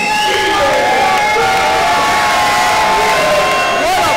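Arena crowd cheering and shouting, many voices at once, loud and steady.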